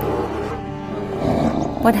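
A bear's low growl, as a cartoon sound effect, rising about a second in over steady background music.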